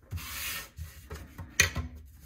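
A rubbing, sliding noise lasting about half a second, then a few light clicks and one sharp click about one and a half seconds in.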